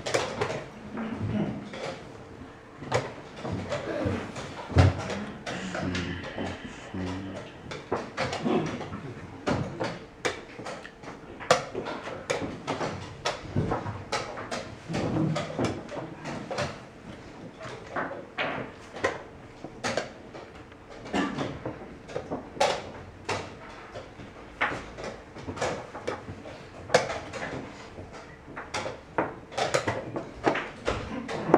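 Wooden chess pieces knocked down on the board and the buttons of a digital chess clock pressed in quick, irregular succession during blitz play: a string of sharp knocks and clicks, several per second at times.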